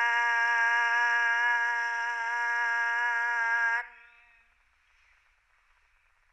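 A woman's voice in a sung devotional chant holds one long note at a steady pitch. It cuts off a little under four seconds in, leaving a short fading echo.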